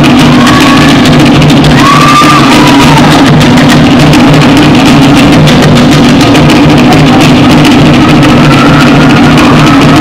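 Live Tahitian drum ensemble playing a fast, driving rhythm on wooden to'ere slit drums and large pahu skin drums, very loud.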